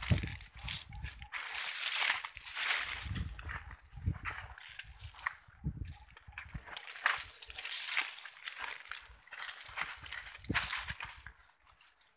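Leaves and brush rustling and crackling steadily as someone pushes through dense undergrowth, with irregular low thumps from movement.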